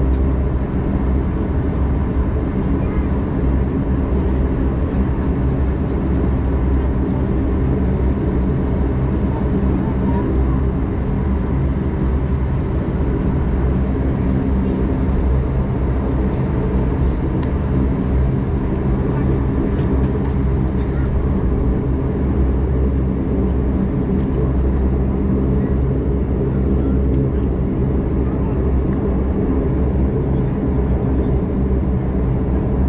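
Bombardier Dash 8 Q400's Pratt & Whitney PW150A turboprops and propellers at low taxi power, heard inside the cabin as a steady, loud drone with several low tones.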